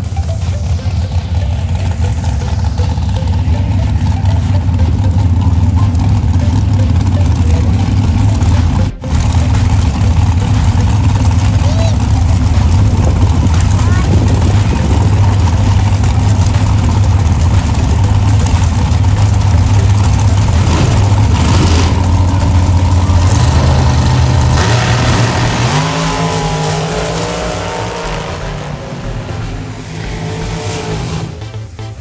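Supercharged dragster engines running loud and steady at the starting line, with a brief cut-out about nine seconds in; near the end the pitch shifts and the sound falls away as the cars run off down the strip.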